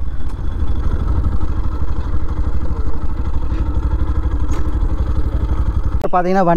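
Yamaha FZ V3 motorcycle's single-cylinder engine running steadily at low revs, a low even throb.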